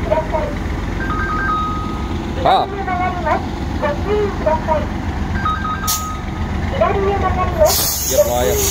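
Heavy diesel engines idling with a steady low drone. An electronic beep pattern, a few quick pips then a held tone, sounds twice, and a loud hiss starts near the end.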